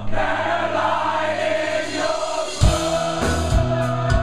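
Live rock band with the audience singing along in unison over a held chord. About two and a half seconds in, the drums and full band come back in with heavy hits.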